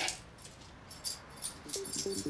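Keys jingling and clinking lightly as they are picked up and handled, a few short metallic jingles. Music comes in near the end.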